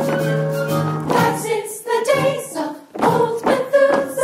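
Musical-theatre ensemble singing in chorus: a long held chord for about the first second, then short punchy sung phrases, with a brief break near three seconds.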